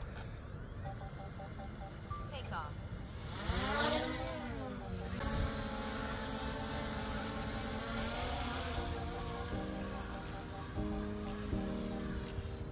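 DJI Mini 3 Pro quadcopter's propellers spinning up for takeoff: a whine that swoops up and back down about four seconds in, with a rushing hiss, then a steady hum. Background music with changing notes comes in over it in the second half.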